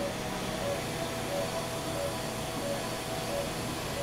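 Steady operating-room background noise, an even hiss and hum from the surgical equipment, with a faint short tone repeating about every two-thirds of a second.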